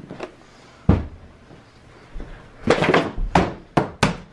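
A plastic gallon milk jug flipped and thudding down on the floor, with one sharp thud about a second in and several more knocks near the end.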